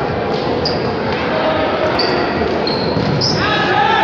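Voices and play echoing around a large sports hall during an indoor futsal match: steady chatter and calls from players and spectators, with thuds of the ball on the hard court and several brief high squeaks.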